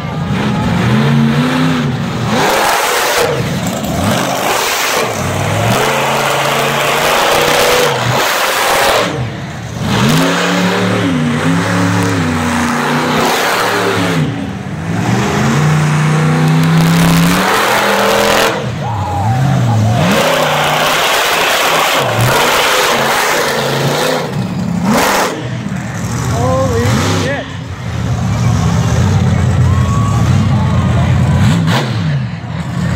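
Monster truck engine revving hard, its pitch climbing and falling over and over, with short drops each time the throttle is let off.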